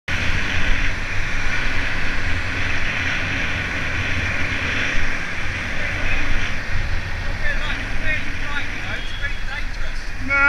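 Steady rush of wind and road noise on a helmet camera's microphone while cycling along a street with traffic. About seven and a half seconds in, a voice starts faintly over it.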